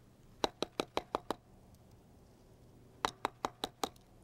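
A wooden stick rapping on a tree trunk: a quick run of about six sharp taps, then a second run of five taps about two seconds later. The tapping is done to bring a nesting barred owl up to the entrance of its box.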